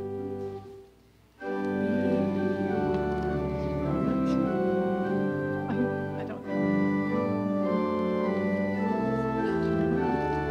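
Church organ playing sustained hymn chords, which break off about a second in and start again. The tune is the wrong hymn, not the one announced.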